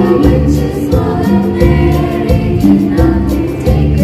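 A group of girls singing a Christmas carol together into microphones, amplified through a PA, over an instrumental backing with a steady bass and beat.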